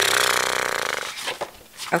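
A person's drawn-out, raspy vocal sound lasting about a second and fading out, with no words.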